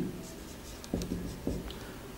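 Marker writing on a whiteboard: a few short, separate strokes as letters are drawn.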